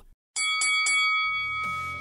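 Boxing ring bell struck three times in quick succession, then ringing on and slowly fading: the signal that opens a fight.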